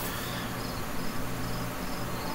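Steady background noise in a pause between spoken phrases: a low hum and hiss with faint, repeating high-pitched chirping.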